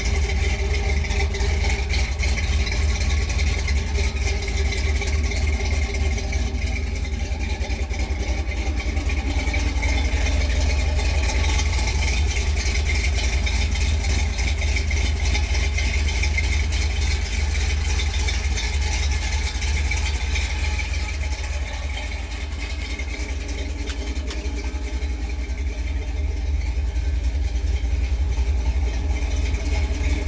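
A 350 Chevrolet V8 idling steadily, heard close under the truck by its MagnaFlow dual exhaust.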